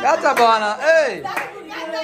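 Excited voices cheering with long, high whoops that rise and fall in pitch, and a couple of hand claps.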